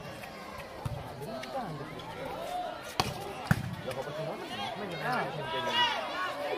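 A volleyball being struck: a few sharp smacks of hands on the ball. The two loudest come about three seconds in, half a second apart, over the voices of the crowd.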